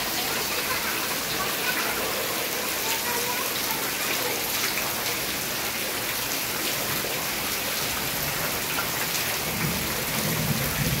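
Heavy rain falling steadily onto standing water and tree leaves, a continuous even hiss of drops splashing.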